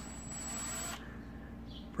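Cordless drill running briefly on a power-strip housing: a high steady whine over a hiss that stops about a second in.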